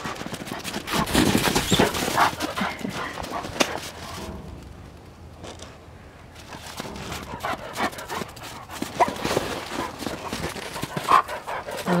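Central Asian Shepherd dogs growling and barking at each other, with the crunch of feet moving on packed snow.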